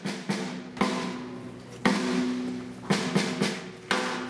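Drums struck about six times at uneven intervals, each hit ringing on with a steady low tone.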